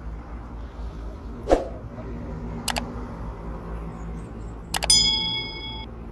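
A subscribe-button sound effect: a mouse click, then a second click about two seconds later followed by a bell-like notification ding that rings for about a second. Earlier, a single thump about one and a half seconds in, over faint steady outdoor background noise.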